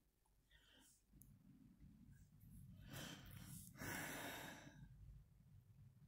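Faint breathing close to the microphone, with two breaths out about a second apart, some three seconds in.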